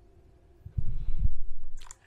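Handling noise: low rumbling thumps for about a second as the small battery rig and its cables are picked up and the camera is moved in close, ending in a few light clicks.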